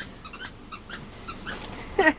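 A dog chewing a new squeaky toy, making a run of short, fairly quiet squeaks, about four a second.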